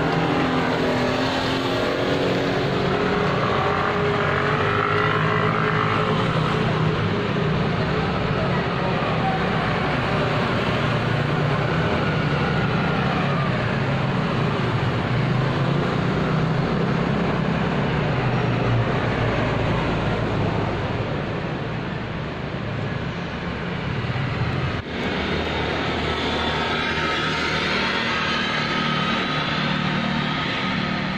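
Street traffic: motor vehicle engines running continuously, their pitch rising and falling as vehicles pass.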